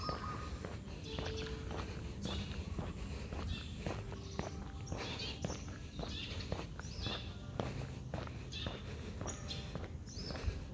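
Footsteps of a person walking on interlocking brick paving, about two steps a second.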